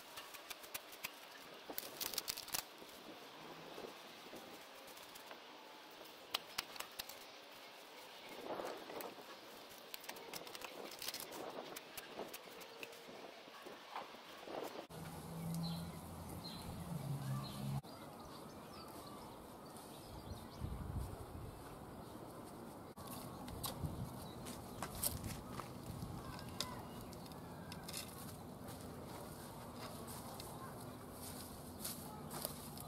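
Hand trowel digging and scraping into garden soil and dry mulch in short, irregular strokes.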